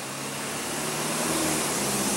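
Motor vehicle noise: a steady rushing sound with a faint low hum, growing gradually louder as it approaches.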